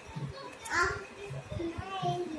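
Young children's voices while playing: a short high-pitched vocal sound a little under a second in, then lower babbling sounds toward the end.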